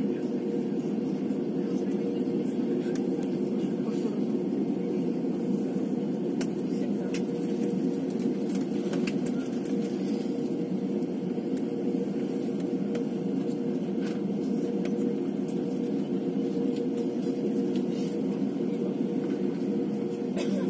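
Steady jet-engine hum inside the cabin of a Wizz Air Airbus A320-family airliner, engines at low power on the runway before the take-off roll, with a steady mid-pitched tone and no rise in power.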